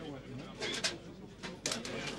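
Indistinct voices talking in a room, with two short hissing bursts, one just after half a second in and one near the end.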